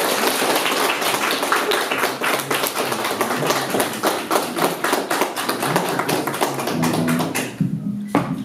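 Small audience applauding: many hands clapping irregularly, fading out near the end.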